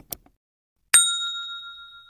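Subscribe-button sound effect: a quick mouse double-click, then about a second later a single notification-bell ding that rings and fades away.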